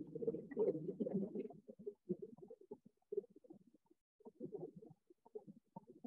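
Food processor running on a thick date and cacao mixture, a low rumbling that comes and goes in short irregular bursts as the dough has not yet formed a ball.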